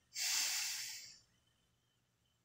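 One breath, about a second long, close to the microphone.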